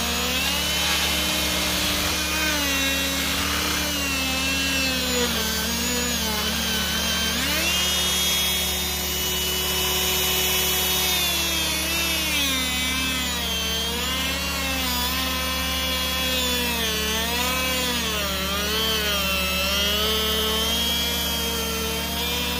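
Hand-held electric die grinder with a small bur carving into wood: a continuous motor whine whose pitch keeps sliding up and down as the bur bites and eases off, held steadier for a few seconds midway.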